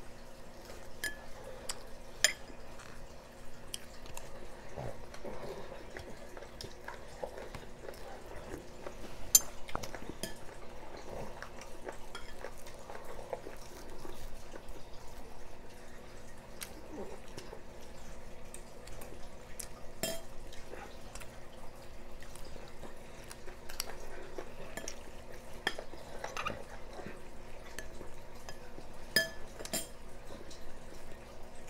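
Spoons and dishes clinking against bowls at a meal table, with soft handling noise between. A few sharp clinks stand out, the loudest about nine seconds in.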